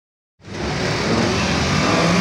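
Engine and road noise of a moving vehicle, heard from on board: a low engine hum under steady noise, starting about half a second in.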